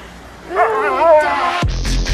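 A Siberian husky's wavering, talk-like howl, one call about half a second in. Near the end, loud electronic music with heavy bass cuts in.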